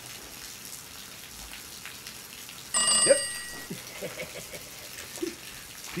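A phone ringtone sounding once, about a second of several steady high tones together, starting nearly three seconds in.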